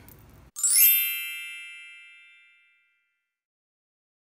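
An edited-in chime sound effect: a quick rising shimmer into a bright, ringing ding that dies away over about two seconds.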